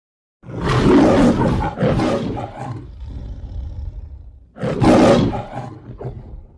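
The MGM logo's lion roar. A long roar starts about half a second in and fades away, then a second, shorter roar follows near the end.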